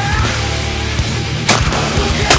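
Loud, heavy rock music, with a single shotgun blast about one and a half seconds in.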